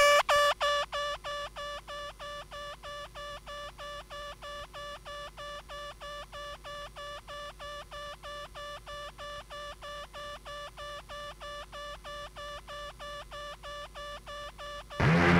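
Electronic music: a single synthesizer note pulsing about four times a second, with a bright, beeping tone. It fades down over the first two seconds, then holds steady.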